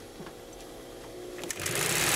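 Mitsubishi Class 75 walking foot industrial sewing machine starting to sew about one and a half seconds in, a sudden loud, fast stitching run. Before it starts only a faint steady hum is heard.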